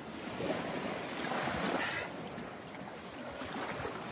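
Small sea waves washing onto a sandy shore, with wind buffeting the microphone.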